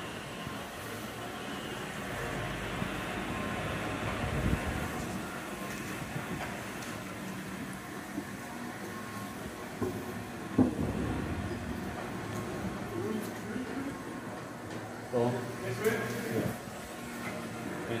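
Small electric utility vehicle rolling along a concrete tunnel floor: a steady rumble with a few knocks, echoing in the tunnel.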